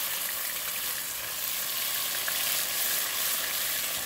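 Blended garlic and culantro frying in hot oil in a pot: a steady, even sizzle.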